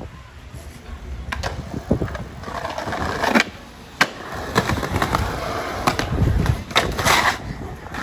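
Skateboard on concrete: a few clacks of the board, a sharp crack about halfway through as it lands off the stairs, then the urethane wheels rolling over the pavement with clicks at the joints.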